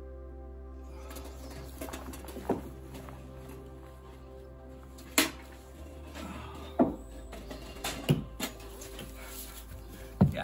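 Background music, over which, from about a second in, come five sharp metallic knocks and clanks, spaced irregularly, as sections of a tent stove's steel chimney pipe are handled.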